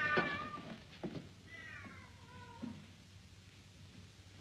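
A cat meowing twice. The louder call comes at the start, and a second call falls in pitch about one and a half seconds in.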